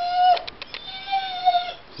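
A dog whining in high-pitched whimpers: a short one at the start, then a longer, slightly wavering one about a second in, with a couple of faint clicks between.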